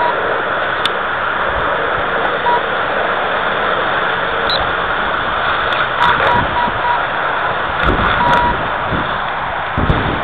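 Steady rush of wind on a small onboard camera's microphone, broken by short electronic beeps from the RC plane's gear: single beeps, then a quick run of four, then a longer one, with a few knocks from handling near the end.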